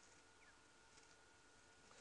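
Near silence: faint background noise.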